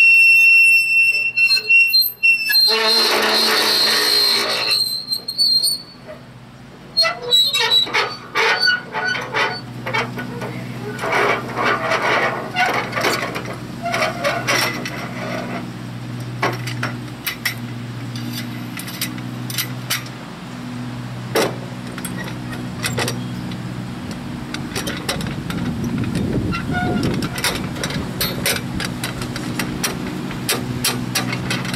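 Metal hand tool working the lug nuts on a trailer wheel hub. It opens with a high metallic squeal, then a few seconds of scraping, then a long run of irregular sharp metal clicks and knocks, over a steady low hum.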